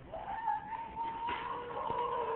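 A moving shopping cart giving a steady high-pitched whine that glides up briefly as it starts, then holds one pitch.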